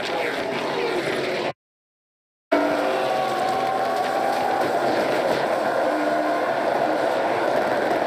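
Stock-car V8 engines running past close by. About a second and a half in, the sound cuts out completely for about a second, then returns as the steady drone of a race car's engine heard from inside its cockpit.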